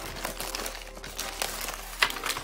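Poly bubble mailer crinkling and rustling as it is handled and its contents are slid out: a continuous crackle of plastic with many small clicks.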